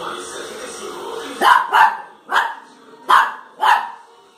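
Small dog barking five times in quick, sharp yaps, starting about a second and a half in. Faint music or TV sound plays underneath before the barking.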